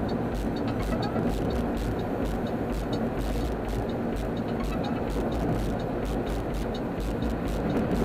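Steady road and engine noise inside a car's cabin at freeway speed, heard through a weak camera microphone, with music playing underneath.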